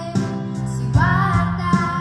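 A young female singer singing live into a microphone over pop music accompaniment, starting a held, slightly wavering note about a second in.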